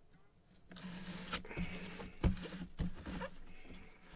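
Gloved hands handling a cardboard helmet box: a quiet rustling and scraping, with a few light knocks as the box is turned, after a brief hush at the start.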